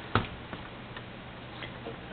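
Vintage JETCO Treasure Hawk Model 0990 metal detector ticking faintly through its speaker over a steady low hum, with one sharper click just after the start.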